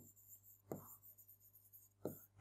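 Near silence, with a faint brief scratch of a pen writing on the board about two thirds of a second in.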